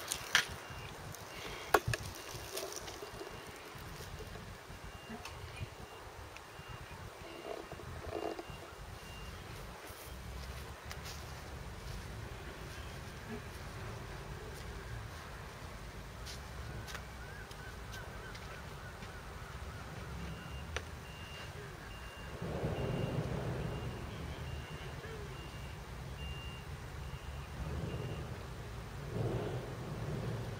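Steady low rumble of distant machinery, with a faint high-pitched beeping that comes and goes and two sharp clicks in the first two seconds.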